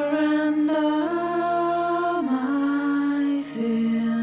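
A voice chanting a mantra in long held notes that step up and down in pitch, with a new phrase starting near the end, over a steady low drone.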